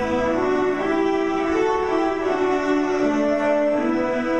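Youth string orchestra playing a melody in held bowed notes that step up and down over sustained chords; the lowest bass notes drop out as it begins.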